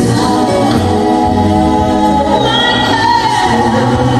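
Live ballad singing: several voices in choir-like harmony hold long notes over the band, with a higher voice rising above them about halfway through.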